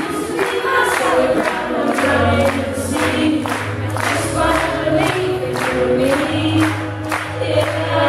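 Live band music with hand claps on the beat, about two a second, under several voices singing together; a low bass note comes in about two seconds in.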